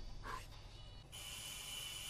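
A doorbell starting about a second in and sounding as one long, steady, terrifying tone, faint in the quietly played episode audio.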